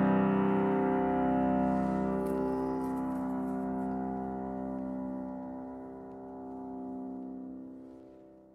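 The final chord of a rock band's closing song, played on keyboard and left ringing as it slowly fades out.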